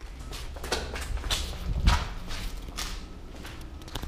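Footsteps walking at a steady pace, about two steps a second, with a heavier thump about two seconds in.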